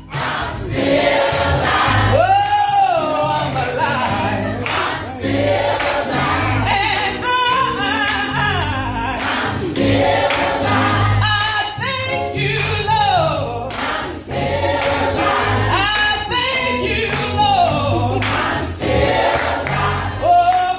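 Gospel choir singing with a lead singer over instrumental accompaniment, the lead voice sliding up and down in pitch above steady low bass notes.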